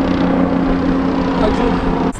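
Helicopter flying overhead, a loud steady drone of engine and rotor.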